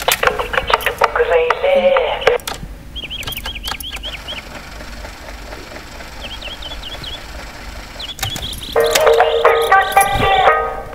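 A Philips portable cassette player: a button click, then voice and music playing through its small speaker, thin with no bass, cut off after a couple of seconds amid more button clicks. Short chirping sounds follow in the middle, and music from the speaker starts again about nine seconds in.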